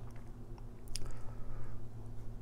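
Low steady hum with faint handling noise from a hand-held phone camera being moved, and one soft click about a second in.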